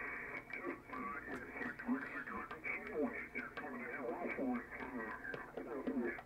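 Single-sideband voice of a distant amateur radio operator on the 20-meter band, played through HDSDR from an SDRplay RSP1 receiver: a man talking over band noise, with everything above about 2.7 kHz cut off by the receive filter, giving a narrow, radio-like sound.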